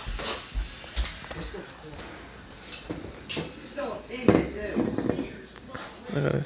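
Handling noise as the camera is moved and turned toward the bottle on the table: a few low bumps in the first second and scattered small knocks, with short bits of quiet, indistinct voice in the second half.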